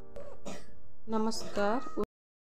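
Parakeet vocalising with short speech-like chatter: a few brief gliding notes in the second half, cut off abruptly at the end.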